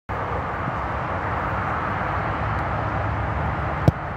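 An American football kicked off a kicking tee: one sharp thump near the end. Under it, a steady rushing background noise.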